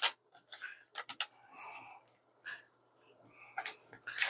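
Packaging being handled: a series of short paper rustles, scrapes and clicks as a tablet in a paper sleeve is slid out of its cardboard box.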